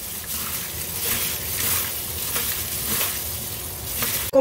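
Gloved hands mixing pork belly chunks in soy-and-five-spice marinade in a stainless steel tray: continuous wet squelching of the meat with rustling of the plastic gloves.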